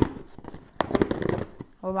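Packaging being pulled open by hand, rustling and crinkling for about a second in the middle.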